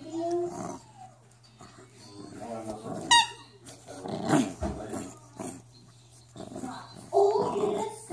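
Puppy growling while it plays tug of war with a rope toy, in short bursts, with a short high-pitched squeal about three seconds in.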